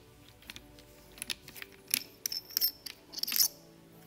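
Metal clicking and light scraping as the nose housing nut is unscrewed by hand from a Stanley PB2500N battery fastener-installation tool, a string of sharp ticks that is densest and loudest in the second half. Quiet background music runs underneath.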